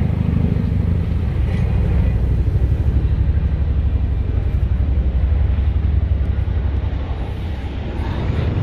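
Zongshen 190 single-cylinder pit-bike engine idling with a steady, fast low pulsing rumble.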